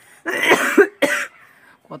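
A person coughing: one loud, rough cough about a quarter-second in and a shorter one near the one-second mark.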